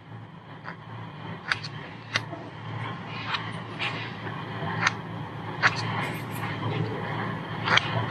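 Fingers handling a small black plastic project enclosure, giving scattered light clicks and taps over a steady low hum.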